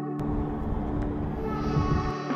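Background music of sustained, held tones. About a fifth of a second in, a sharp hit starts a rough rushing noise under the music that lasts almost two seconds.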